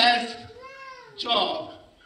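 A man's voice in one high, drawn-out whining cry that rises and then falls in pitch, an imitation of a small child crying, set between short bits of his speech.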